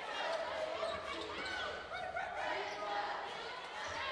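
Basketball game ambience in a large arena: a ball bouncing on the hardwood court with faint voices from the court and stands, echoing in the hall.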